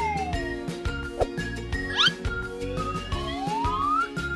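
Cheerful children's background music with a steady beat, overlaid with whistle-like cartoon sound effects: a falling glide at the start, a quick upward chirp about halfway, and a slow rising glide near the end.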